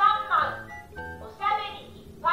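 Anpanman talking pen from the Sega Toys Kotoba Zukan DX electronic picture book, just switched on, speaking in a high-pitched character voice in two short phrases over a jingle.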